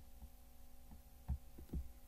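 Faint steady electrical hum from the recording setup, with two soft low thumps about a second and a half in, from the mouse clicking into the browser's address bar.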